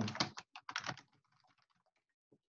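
Computer keyboard typing: a quick run of keystrokes in the first second.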